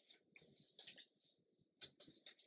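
Near silence, with faint rustles of paper sheets being handled and smoothed by hand and one soft tick near the end.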